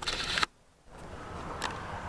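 Rustling handling noise on a handheld camcorder's built-in microphone for about half a second, then a brief drop-out and steady room noise with one short knock about 1.6 s in.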